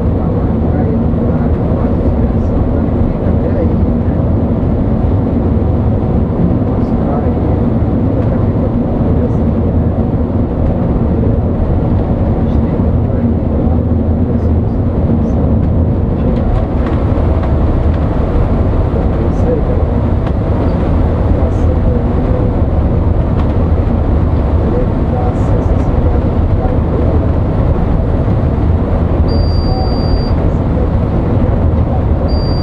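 Coach bus cruising on a highway, heard from the driver's cab: a steady, loud drone of diesel engine and tyre/road noise. A short high-pitched beep sounds near the end.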